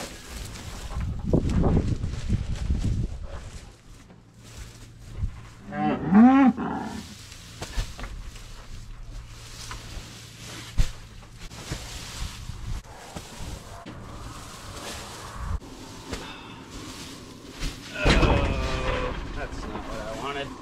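Cattle mooing: one long call about six seconds in and another near the end, from cattle just separated at weaning and waiting to be fed. Heavy thumps in the first few seconds as straw bales are climbed over.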